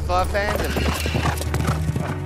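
A horse whinnies at the start, then hooves clip-clop in a run of short hoofbeats, over a steady low music drone.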